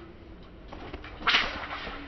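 A martial-arts fan swung through the air with a swish, then snapped open with one sharp crack a little past the middle.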